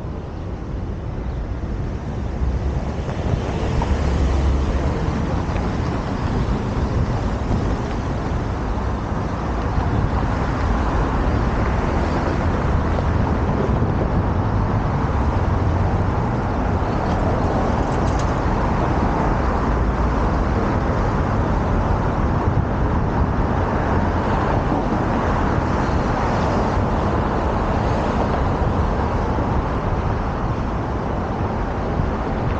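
Steady rushing noise of riding a bicycle through city streets: wind rumbling on a helmet-mounted camera's microphone, mixed with road traffic. It grows louder about three seconds in, as the bike gets moving, then holds steady.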